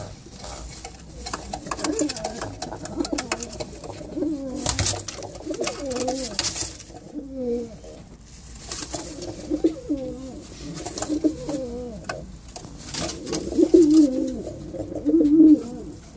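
Several domestic male pigeons cooing over and over, low wavering coos that bend up and down in pitch, in a small concrete loft box, with a couple of brief rustling noises about five and six and a half seconds in.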